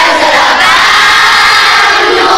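Many children's voices singing together in a loud chorus, holding a long note.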